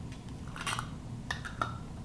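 A few light clicks and clinks as a metal canning lid and screw band are handled at a glass jar, three short ones spread over the second half, over a faint steady low hum.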